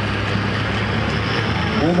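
A pulling tractor's engine working steadily under load as it drags a weight-transfer sled down a dirt pulling track. A man's voice over the loudspeaker comes in right at the end.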